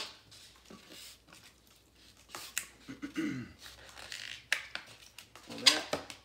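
Latex twisting balloon being handled and stretched by hand: scattered rubber squeaks and light clicks, with a couple of short pitched squeals, one about halfway through and one near the end.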